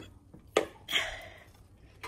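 Handling noise from a glass-bowl convection oven's lid: a sharp light knock about half a second in, then a brief scrape that fades.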